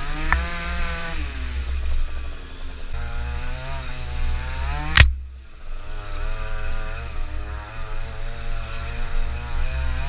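Small two-stroke scooter engine running on a bumpy trail, its revs rising and falling as the throttle is worked, with wind rumbling on the microphone. A single sharp knock about halfway through is the loudest sound.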